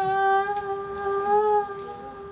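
A woman's voice holding one long, steady note on an 'uh' sound into a microphone, a vocal test before she sings.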